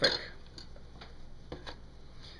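A few faint, light clicks of the food chopper being handled, spaced irregularly, with quiet room tone between them.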